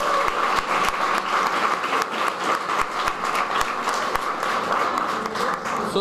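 An audience applauding: many hands clapping in a dense, steady wash.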